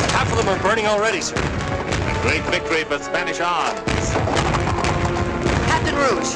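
Orchestral film score over a battle, with repeated booms and shots of cannon and gunfire.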